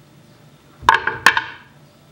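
Hand-held metal cherry pitter being put down on a wooden chopping board: two sharp clacks less than half a second apart, each with a short metallic ring.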